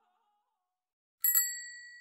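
A single bright bell ding about a second in: a sharp metallic strike with a few high ringing tones that slowly fade.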